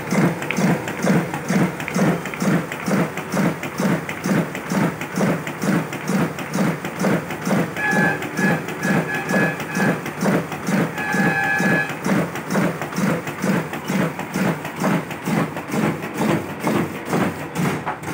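Riso digital duplicator printing cards, its feed and drum mechanism running with a steady rhythmic thump-and-swish at about two and a half beats a second, one beat per sheet fed through.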